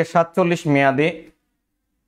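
A man's voice speaking for about the first second and a half, then dead silence.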